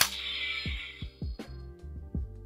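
Bandai Legacy Power Morpher toy's button pressed: a click, then its 'ka ching' sound effect, a bright shimmer that lasts about a second and fades, as its lights come on. Soft background music with plucked notes plays underneath.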